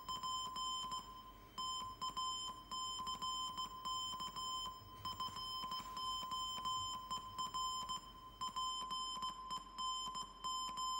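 Morse code sent as a single high beeping tone, keyed on and off in an uneven run of short and long beeps, with a half-second break about a second in.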